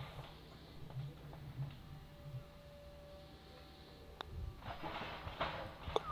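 Quiet open-air background, then a single sharp click about four seconds in: a putter striking a golf ball on a short putt.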